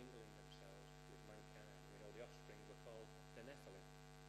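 Low, steady electrical mains hum with a ladder of even overtones, under faint, indistinct wavering voice sounds.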